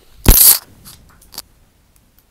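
Loud rustling crunch of handling noise close to the microphone, as the earphone-and-mic setup or the computer is picked up and moved, followed by two faint clicks.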